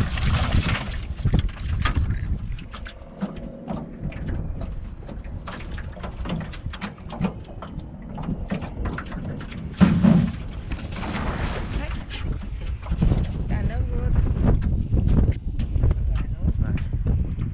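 Wind buffeting the microphone over open water, with scattered small clicks and knocks as a nylon cast net is gathered and swung for a throw from a flat-bottomed boat. A louder thump comes about ten seconds in.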